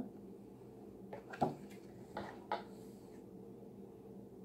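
Clear plastic takeout dessert box being handled and set down: a few light plastic clicks and knocks, the loudest about a second and a half in, over a low steady hum.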